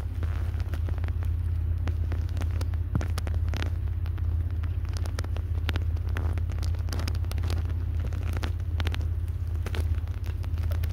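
Close-up chewing of a chicken sandwich: wet mouth noises and many irregular crackly clicks right at the microphone. A steady low rumble runs underneath.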